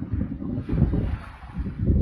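Wind buffeting the microphone in uneven gusts, with waves washing onto a stony lakeshore.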